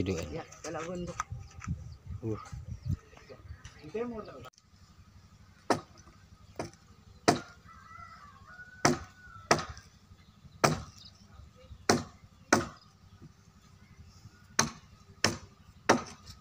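Voices for the first few seconds, then a hatchet chopping at a large sawn timber beam along its split: about eleven sharp blows at an irregular pace, several coming in quick pairs.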